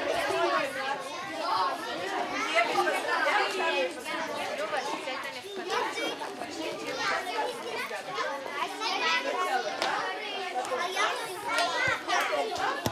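A crowd of young children chattering and calling out over one another, with many voices overlapping continuously and no single speaker standing out.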